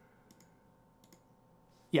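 A few faint, scattered computer clicks over quiet room tone in the first second or so, then a short spoken 'yeah' at the very end.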